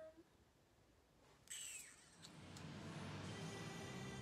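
Near silence, then a short sudden sound with a falling high sweep about one and a half seconds in, followed by background music with a steady bass line fading in.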